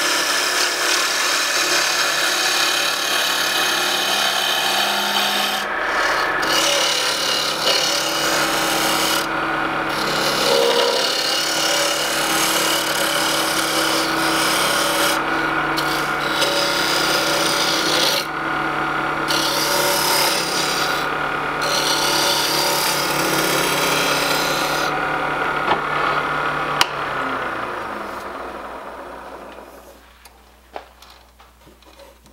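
Wood lathe spinning a black walnut blank while a handheld turning tool cuts it: a steady scraping hiss over the machine's hum, briefly broken several times as the tool comes off the wood. Near the end the cutting stops and the lathe winds down, its hum falling in pitch and fading.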